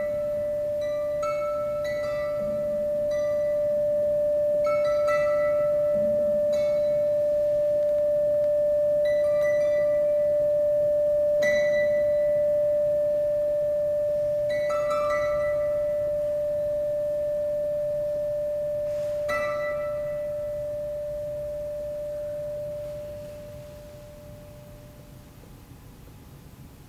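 Closing bars of a free improvisation for harp, kannel and harpsichord: sparse single plucked string notes ring out every second or few seconds over a steady, pure held tone that lasts almost the whole time. The plucked notes stop and the held tone fades away near the end.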